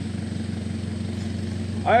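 Off-road 4x4 engine running steadily at low revs, a low, even hum.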